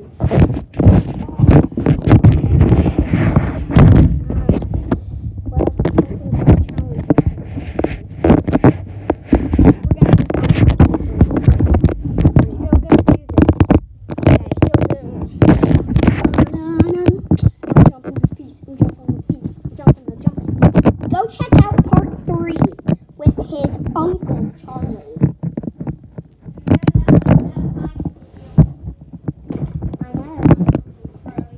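Phone microphone being jostled and rubbed against clothing: loud, irregular knocking, rustling and low thumps throughout, with muffled voices underneath.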